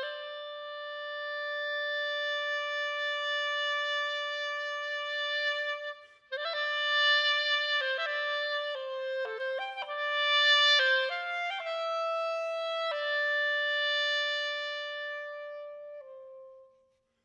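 Unaccompanied clarinet playing a contemporary solo piece: one long held note, a brief break about six seconds in, then a run of quick notes, ending on another long held note.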